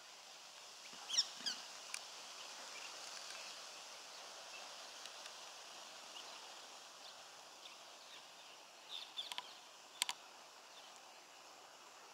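Quiet outdoor ambience with a few short, high bird calls: a pair about a second in and a quick cluster around nine to ten seconds.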